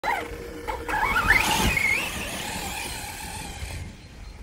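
Arrma Notorious RC monster truck's brushless motor (Spektrum Firma 4074, 2050Kv) on 6S, whining up in pitch as the truck accelerates hard away, then holding and fading as it gets farther off.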